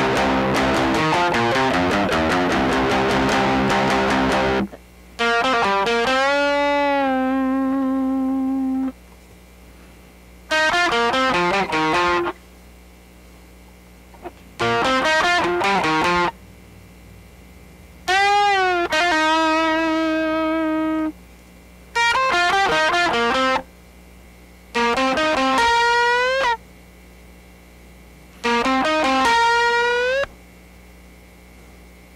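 Electric guitar tuned to C standard, played through fuzz distortion: a dense riff for the first four and a half seconds, then about seven short lead licks with string bends, each stopped off abruptly and followed by a pause with a faint steady amp hum.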